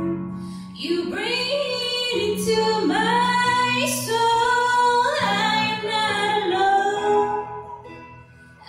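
Music: a woman singing a slow song in long held notes over a sustained low accompaniment, fading somewhat near the end.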